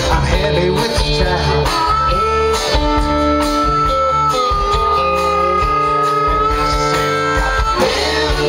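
Live rock band playing an instrumental break: a harmonica holds long sustained notes over electric and acoustic guitars, bass and drums.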